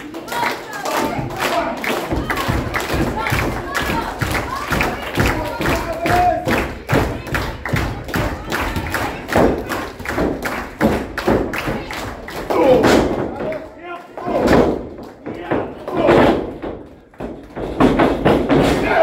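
A steady rhythm of thumps and claps, a few a second, from a wrestling ring and its audience, with voices shouting over it and several louder shouts in the second half.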